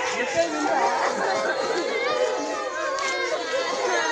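A crowd of schoolgirls talking and calling out over one another, a dense babble of high children's voices.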